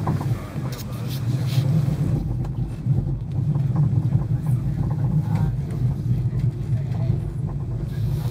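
Passenger train running, heard from inside the carriage: a steady low rumble, with a few short clicks about a second in.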